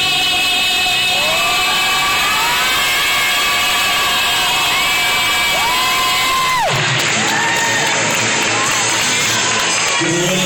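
Live male vocalist singing long, gliding held notes through a microphone and PA over a backing track, with the audience cheering and whooping. About two-thirds of the way through the held line ends abruptly and the sound turns to a denser wash of music and crowd noise.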